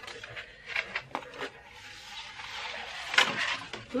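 Large printed paper dust jackets being handled and unrolled, rustling and crackling, with a few sharp crinkles early on and a louder crackle about three seconds in.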